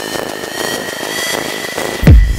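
A steady rushing whoosh, like a jet engine, with a thin high tone that rises slightly. It fills a break in the bass-heavy electronic music, which drops out just before and comes back right at the end.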